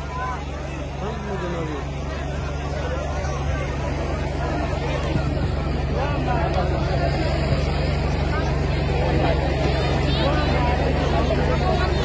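Large crowd of many voices talking at once, rising gradually louder, over a steady low hum.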